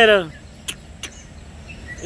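A person's voice ends a short phrase at the start, then quiet outdoor background with two brief clicks about a second in.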